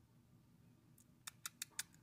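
Near silence, then a quick run of about five sharp, dry clicks in under a second near the end.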